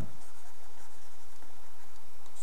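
Faint scratching of a stylus writing on a tablet, over a steady low hum.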